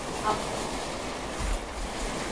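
Steady low hiss with faint rustling and a soft low bump about one and a half seconds in, as a heavy paddle board backpack is lifted off a child's shoulders.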